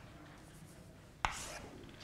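One sharp tap of chalk on a blackboard a little over a second in, followed by faint chalk writing; quiet room tone before it.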